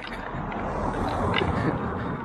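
A car driving past on the street, its tyre and engine noise swelling as it comes by.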